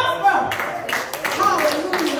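Raised voices in a church service with sharp hand claps about two a second, as in a congregation clapping along.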